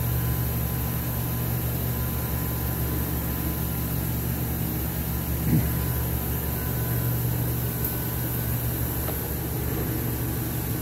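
Steady hum of a running Hilliard chocolate enrobing line, its motors and conveyor belt carrying into the cooling tunnel: an even, low machine drone with a faint steady whine above it.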